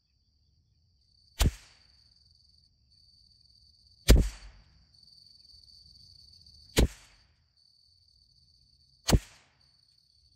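.22 LR rimfire rifle fired four times, a sharp crack every two to three seconds, over a steady high-pitched insect buzz.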